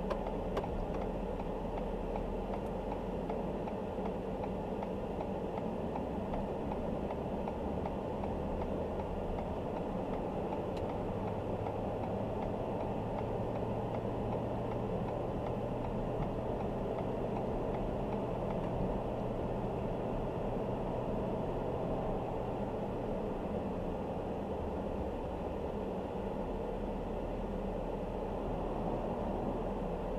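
Heard from inside the cab of a moving pickup truck: steady engine and road noise. A low engine drone holds one pitch through the middle stretch.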